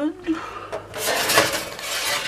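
Baking tray of foil-cased mini pies being handled and moved into an oven: a few metal knocks and scrapes, loudest about a second and a half in.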